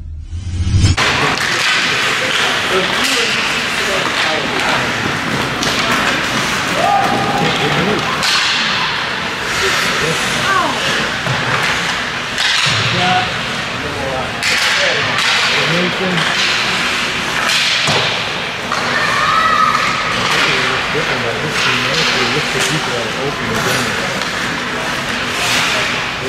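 Ice hockey game sound from rinkside: skates and sticks on the ice, pucks and bodies knocking against sticks and boards, and spectators talking and calling out, with many short knocks throughout. A short stretch of music cuts off about a second in.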